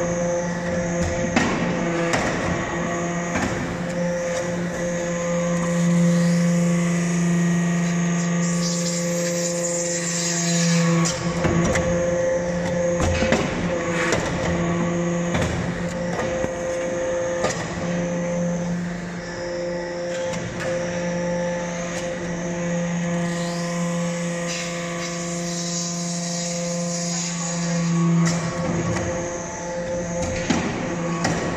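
Hydraulic metal-chip briquetting press running: a steady, unchanging hum from its hydraulic power unit that swells at times, with scattered knocks and clacks as briquettes are pressed and pushed out.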